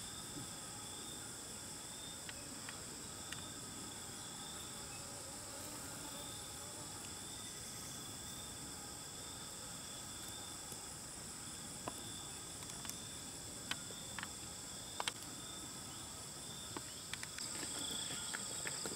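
Insects calling steadily in a constant high, shrill chorus, with a lower band that pulses, and a few faint sharp clicks in the second half.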